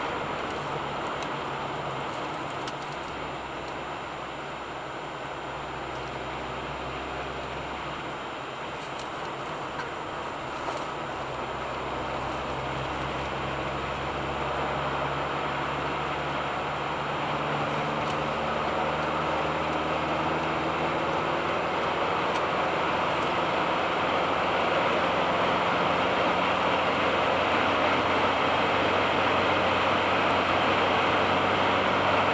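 Steady tyre and wind noise with a low engine hum, heard from inside a car travelling at motorway speed, gradually getting louder toward the end.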